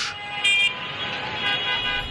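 Vehicle horns honking over the steady noise of jammed road traffic: a short horn blast about half a second in, and another horn sounding near the end.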